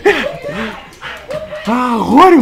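A dog giving a string of short yips and whines, each rising and falling in pitch.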